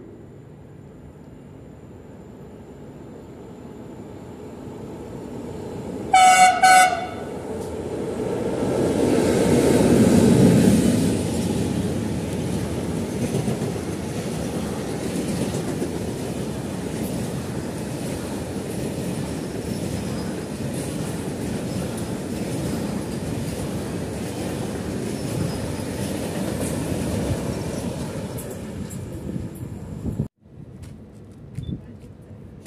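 Freight train coming into the station and rolling through. Its rumble builds and the locomotive sounds a short horn blast about six seconds in. The passing is loudest about ten seconds in, then a long string of flat wagons rolls by with a steady clatter on the rails.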